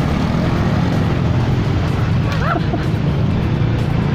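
Road traffic at a crossroads: motor vehicle engines and tyres making a steady low rumble as a car passes close by. About two and a half seconds in, a brief faint call bends in pitch over the traffic.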